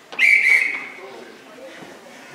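Referee's whistle blown once: a short, steady, high-pitched blast that fades out after under a second.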